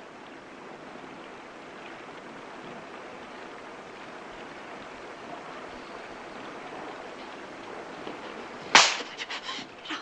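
Heavy storm rain falling, a steady even hiss that slowly swells. Nearly nine seconds in, a sudden loud sharp sound cuts in, followed by short broken sounds.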